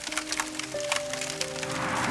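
A fire crackling with many sharp pops, over soft background music of a few held notes.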